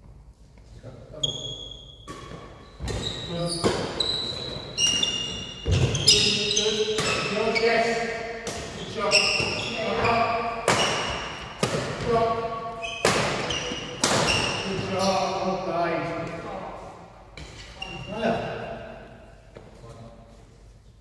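Badminton rally in a large echoing hall: sharp cracks of rackets striking the shuttlecock roughly once a second, starting about three seconds in and stopping about three-quarters of the way through. Short high squeaks of shoes on the wooden court come between the hits.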